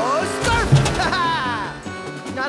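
A voice making wordless sliding exclamations, rising and then falling in pitch, over background music, with a brief low thump a little under a second in.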